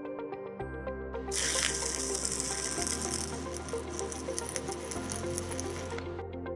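Stick (SMAW) welding arc from a 7018 electrode crackling steadily while a tack weld is laid on a steel test coupon. It starts about a second in and stops near the end.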